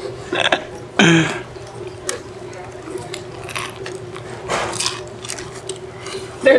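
A person biting into and chewing a curried chicken sandwich, with scattered short crunches and mouth noises and a brief falling vocal sound about a second in.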